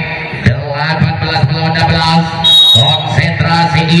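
Voices chanting without pause, with sharp beats through it, and a short high whistle blast about two and a half seconds in: a referee's whistle signalling the serve.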